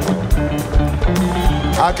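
Live band playing a steady groove with a regular beat, about two strokes a second. A man's voice starts speaking near the end.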